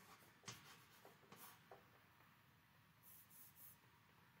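Faint writing on a board: a sharp tap about half a second in, a few lighter taps, then short scratchy strokes near the end.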